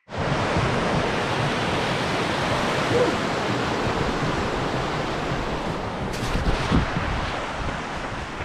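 Steady rushing of a fast-flowing creek, with wind buffeting the camera microphone. A few light knocks come about six seconds in.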